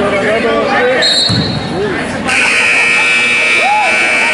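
Scoreboard buzzer in a gym gives one steady buzz of about a second and a half, marking the end of a wrestling bout, over the voices of spectators. A shorter, higher steady tone sounds about a second before it.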